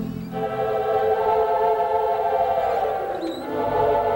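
Mighty Wurlitzer theatre pipe organ playing held chords of a slow ballad. The bass drops out early on, a falling line sinks through the middle register about three seconds in, and the bass returns near the end.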